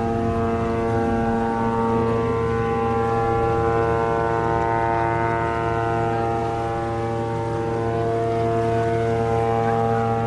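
A ship's horn sounding one long, steady blast, a chord of several notes held unchanged, its lowest note dropping out about a second and a half in.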